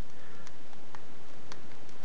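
Faint, evenly spaced ticks, about two a second, over a steady hiss.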